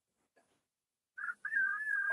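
Near silence, then, a little over a second in, a faint thin whistle: one high steady tone that dips slightly in pitch, over a light breathy hiss.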